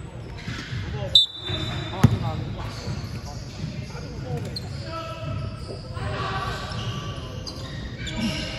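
A basketball bouncing on a hardwood gym floor, with one sharp bounce about two seconds in, under players' background chatter.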